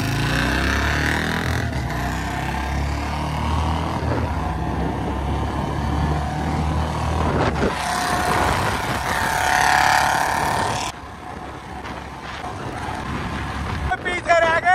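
Royal Enfield Bullet single-cylinder motorcycles with loud exhausts accelerating hard in a race, the engine note stepping up and down as they pull through the gears. About halfway through, a Bullet is heard riding past, and the sound drops a little near the end.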